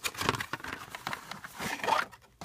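Cardboard glasses box being slid open by hand: uneven scraping and rustling of the packaging, louder near the end.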